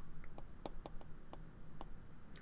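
Faint, light clicks of a stylus tip tapping on a tablet screen while letters are handwritten, about eight irregular ticks.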